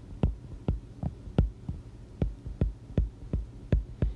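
Stylus tip tapping on a tablet's glass screen while handwriting, about ten short sharp clicks at an uneven pace.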